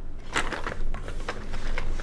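Several light clicks and knocks as a child handles toys, from pieces tapping and clacking together.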